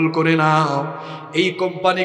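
A man's voice intoning a Muslim supplication prayer (dua) in a drawn-out, chant-like melody, holding a long note, then falling away and starting a new phrase after about a second and a half.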